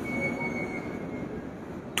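A pause in speech filled with steady room noise. A faint, thin, high whine sounds for about the first second and then fades.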